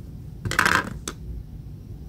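Metal crochet hook set down on a hard tabletop: a short clatter about half a second in, followed by a lighter click.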